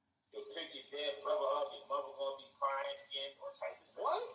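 A man's voice played back from an online video, starting about a third of a second in and running in short spoken phrases.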